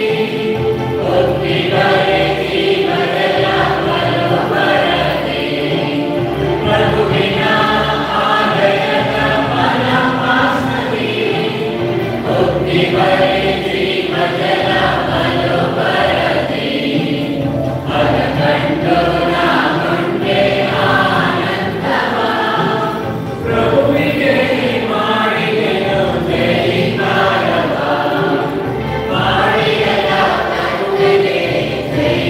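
Church choir singing a hymn without a break.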